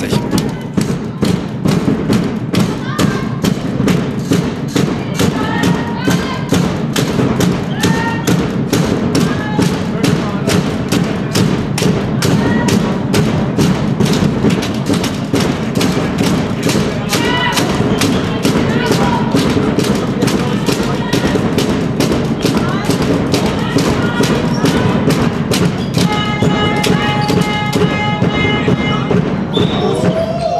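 Handball spectators in a sports hall keeping up a fast, steady beat, with shouts and cheering over it. Near the end a long held tone sounds above the noise.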